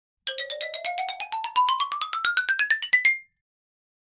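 Short intro jingle of quick, bright repeated notes, about nine a second, climbing steadily in pitch for about three seconds and ending on one slightly longer high note.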